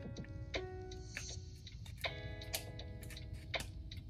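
Quiet background music with sustained chords, over small clicks and taps from handling a compact camera while a furry wind muff is fitted onto its top.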